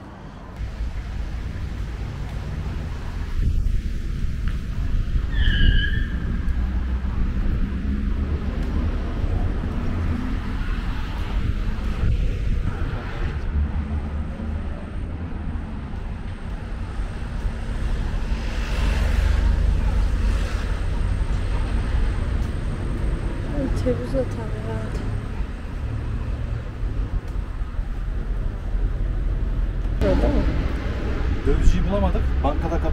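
City street traffic with a strong, steady low rumble; two short high chirps about five seconds in and faint voices near the end.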